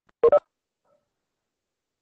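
Two short electronic beeps in quick succession, the second slightly higher in pitch: a video-call notification chime.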